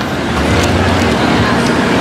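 Steady outdoor street noise: a dense wash of traffic sound with a low, even hum running under it.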